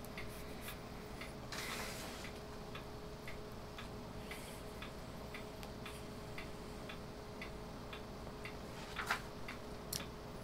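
Faint, steady ticking, about two ticks a second, like a clock, over a low steady electrical hum. A brief, slightly louder sound comes near the end.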